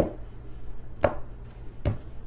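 Tarot cards being handled and shuffled, giving three sharp knocks: one at the start, one about a second in and one near the end.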